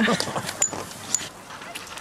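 Hot chocolate being poured from a thermos flask into a cup: a soft, steady pouring hiss with a few small clicks.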